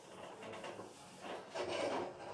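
Marker pen writing on a whiteboard: a series of short scratchy rubbing strokes, the loudest just before the end.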